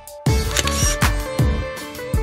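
A camera shutter click about a quarter second in, over background music with a steady beat.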